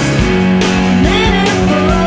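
Rock song playing: full band with drums keeping a steady beat under sustained electric guitars, in a passage without sung words.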